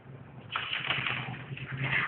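Textbook pages being leafed through and rustling, starting about half a second in, over a faint steady hum.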